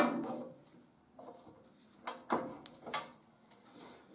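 Steel hold-down clamps being set and tightened on square steel tubing on a steel fixture table: a few light metal knocks and clicks about two and three seconds in, with quiet between.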